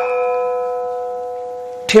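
A metal bell struck once, ringing with several clear tones that slowly die away; the lowest tone is still sounding when speech starts near the end.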